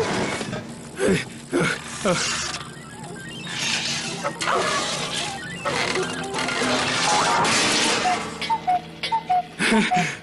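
Cartoon soundtrack: background music under comic sound effects, sudden crashes and clatters, with short wordless vocal cries. Near the end comes a quick run of short high notes.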